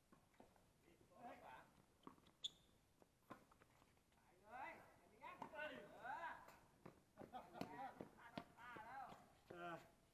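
Faint voices of players calling and talking during a tennis rally, with a few sharp pops of racket striking ball.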